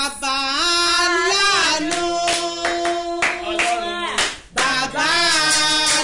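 A woman singing, with hand clapping in time through the middle for a couple of seconds. The singing breaks briefly after the clapping and then goes on.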